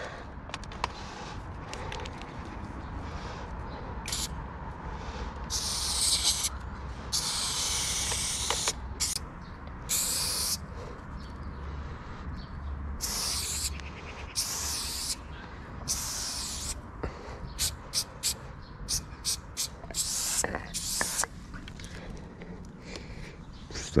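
Aerosol spray paint can spraying onto a wall in hissing bursts: several longer sprays of about a second each, then a run of short, quick spurts.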